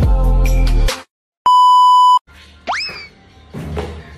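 Backing music with a heavy beat cuts off about a second in; after a brief silence, a steady high electronic beep sounds for under a second, followed by a quick sound effect that swoops up in pitch.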